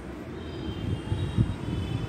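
Low rumble with irregular thumps, the loudest about one and a half seconds in, from a handheld phone being carried along while the person holding it walks.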